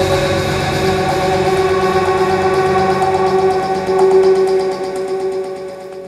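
Electronic dance music: sustained synthesizer tones held without a clear beat, the bass thinning out and the level dropping toward the end.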